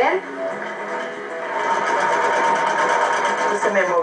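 Electric sewing machine stitching steadily, starting about a second and a half in, with music underneath, heard through a television speaker.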